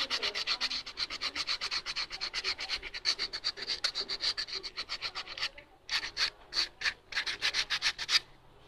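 A sanding block rubbed quickly back and forth along the edge of a stitched cowhide leather case, giving a fast, even run of dry scratchy strokes, several a second, as the edge is smoothed. About five and a half seconds in the strokes break off, then come back in a few short bursts.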